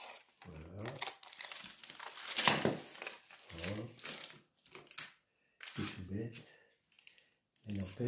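Adhesive aluminium foil tape crinkling as it is cut with scissors and pressed by hand around the crimped end of metal oil paint tubes. The loudest crinkle comes about two and a half seconds in, and a shorter bout follows near five seconds.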